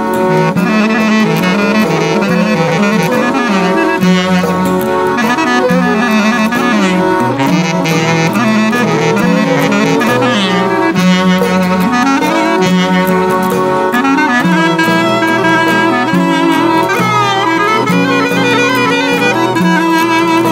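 Instrumental break of an Epirot folk song: a clarinet plays an ornamented melody with slides and bends over a steady held accompaniment.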